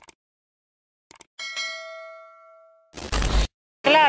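Subscribe-button sound effect: a few mouse clicks followed by a notification bell ding that rings and fades over about a second and a half. About three seconds in there is a short burst of noise with a low thump.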